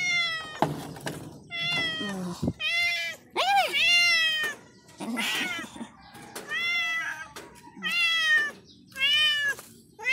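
A hungry tuxedo cat meowing over and over, about seven meows roughly a second apart, each one rising and then falling in pitch.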